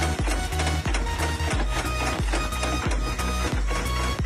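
Background music with a steady beat and bass.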